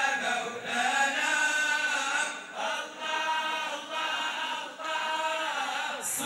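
A group of men's voices chanting unaccompanied devotional sama' and madih, praise of the Prophet. The singing comes in long held phrases with short breaks between them.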